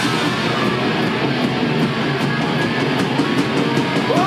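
Live rock band playing: distorted electric guitars, bass and a drum kit with cymbals ringing, loud and steady.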